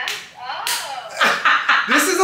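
Loud laughter from people in the room, turning into quick repeated bursts in the second half. Sharp sudden smack-like sounds come at the very start and again under a second in.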